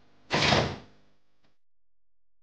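A single short, loud hit of noise, a sound effect in the drama's title sequence, starting about a third of a second in and cutting off after about half a second; otherwise near silence.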